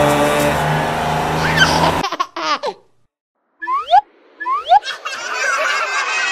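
Children's song music stops about two seconds in. After a short gap comes a child laughing, with two quick rising squeals.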